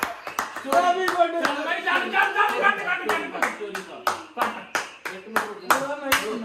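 A small group clapping hands together in a steady rhythm, about three claps a second, the claps getting stronger and more regular after about three seconds.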